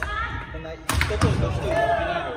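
Badminton rackets smacking shuttlecocks during a fast feeding drill: a sharp hit right at the start and a quick cluster of hits about a second in, with sports shoes squeaking on the wooden gym floor.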